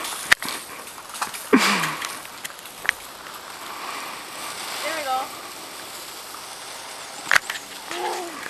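Faint, brief voices over a steady outdoor hiss, with a few sharp clicks or knocks scattered through it.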